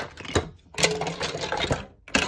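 Hard wooden and plastic toy pieces clattering and rattling as they are handled in a container: a short clatter at the start, a click about half a second in, then a longer run of rattling for about a second.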